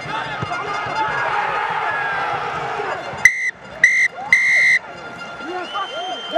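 Referee's whistle blown three times about three seconds in, two short blasts and then a longer one: the full-time whistle ending the match. Before it, a commentator's voice over crowd noise.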